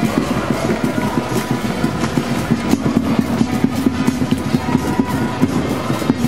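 Loud noise of a marching crowd of football supporters, a dense low rumble of many voices with quick, irregular beats.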